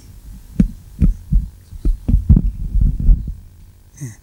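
Microphone handling noise as a hand grips the podium microphone and lifts it out of its stand clip: about a dozen dull low thumps and rumbles over about three seconds.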